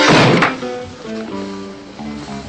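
A single loud gunshot right at the start, dying away within about half a second, over orchestral background music.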